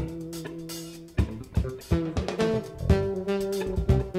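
Live jazz-funk band playing: drum kit, bass and guitar under held melody notes. A held note fades for about a second, then the drums come back in with sharp hits and a steady beat.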